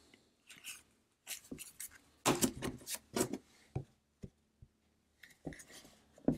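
Stack of baseball cards handled by hand, card stock sliding and rubbing against card as they are flipped one by one, in short irregular rustles that are loudest about two to three seconds in.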